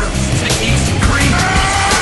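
Action soundtrack music with a rushing whoosh sound effect in the second half.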